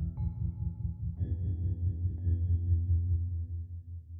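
Lo-fi hip-hop instrumental: a heavy low bass under sustained chords, with new notes struck about once a second. The music fades away in the last second.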